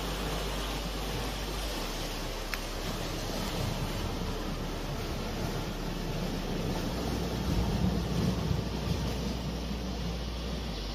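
Sea waves washing against rocks, with wind on the microphone: a steady rushing noise that swells a little about eight seconds in.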